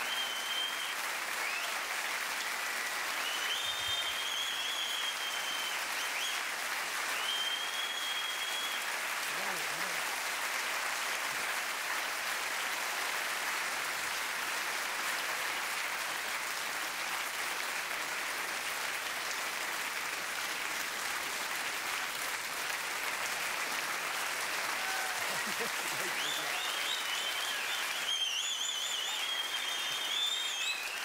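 Theatre audience applauding steadily, with a few short high-pitched whistles near the start and again near the end.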